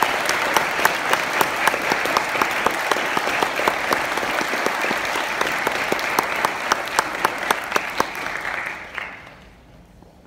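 Audience applauding in a hall, with one person clapping close to the microphone about three times a second. The applause dies away near the end.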